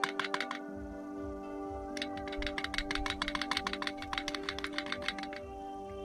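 Background music: sustained chords under a fast, even ticking beat that drops out for about a second and a half and then comes back.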